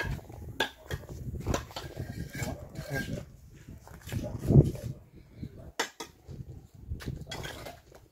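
Scattered sharp clinks and taps of bricklaying, a steel trowel knocking against hollow clay bricks and mortar, with voices in the background.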